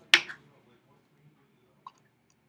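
A single short, sharp vocal sound just after the start, then a faint click near the end.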